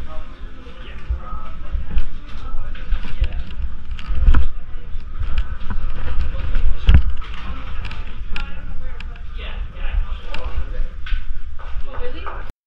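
Indistinct chatter of several people in a busy room, with low thuds of footsteps and handling knocks, the heaviest about four and seven seconds in.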